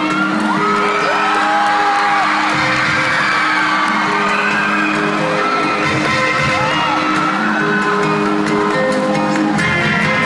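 Pop music playing loudly over a concert sound system in a large hall, with the audience whooping and cheering over it.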